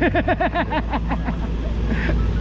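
A man laughing, a quick run of short 'ha' pulses that dies away about a second and a half in, over a steady low hum of street traffic.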